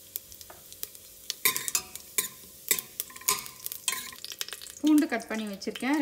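Cumin seeds spluttering in hot oil in a steel pressure cooker: sharp, irregular pops that get louder and more frequent about a second and a half in.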